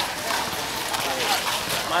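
Several people's voices talking indistinctly, overlapping chatter without clear words.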